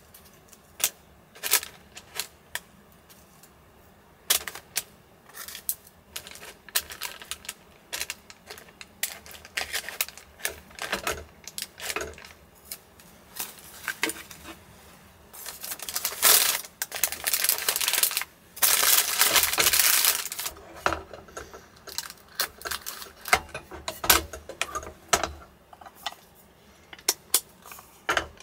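A paper sheet rustling and crinkling as it is handled and folded around food, with many light clicks of chopsticks and utensils. Two longer spells of loud crinkling come about two-thirds of the way through.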